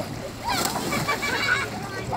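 Water splashing as children tumble off an inflatable tube into lake water, starting about half a second in, with children's voices shouting over it.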